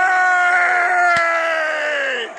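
A person screaming in celebration: one long, held cry that slowly falls in pitch and glides down as it ends. A single sharp knock cuts through a little past halfway.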